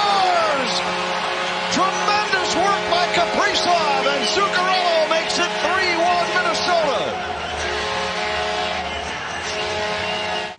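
Arena goal horn holding a steady chord under a home crowd cheering and shouting, celebrating a goal just scored.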